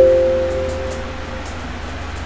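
A computer alert chime sounds once as a clean two-note tone and fades out over about a second and a half, repeating the chimes just before it as keys are pressed in a search box that finds no match. A few faint clicks follow.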